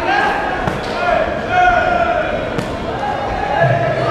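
Indistinct shouting voices echoing in a large sports hall during a Muay Thai bout, with a few sharp thuds from the ring about a second in and again past the middle.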